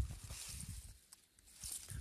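Faint rustling of dry pine needles and forest litter as a hand digs a chanterelle mushroom out of the ground and lifts it. The rustling drops away briefly about halfway through, then starts again.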